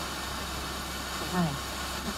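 A Sony radio cassette player picking up a weak broadcast: steady static hiss over a low hum. An announcer's voice breaks through faintly about a second in.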